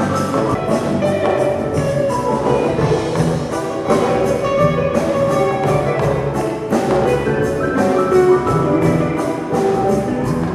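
Live Malian band music: electric guitars over bass and percussion, playing an instrumental passage with a steady beat, amplified through the hall's PA.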